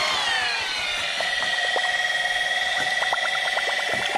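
Electric drill with a paddle mixer stirring a tin of antifoul paint. The motor's whine drops in pitch over the first second as it takes up the thick paint, then holds steady, with a few light ticks.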